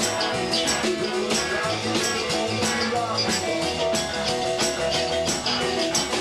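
Live rockabilly band playing an uptempo blues: piano and hollow-body electric guitar over a steady beat.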